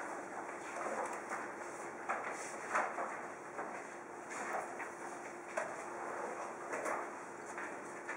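Paper rustling and book pages being leafed through, with scattered soft handling and scraping noises, over a faint steady hum.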